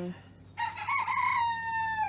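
Rooster crowing: one long call that wavers at the start, then holds a long note that falls slightly in pitch toward the end.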